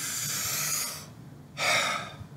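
A man's full breath in, lasting about a second, then a short, louder sighing breath out near the end. It is a relaxed exhale that lets the lungs settle at functional residual capacity.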